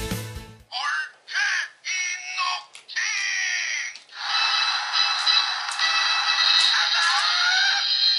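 Electronic toy sounds from a small, tinny speaker: several short warbling voice or effect clips, then a longer electronic jingle from about halfway through.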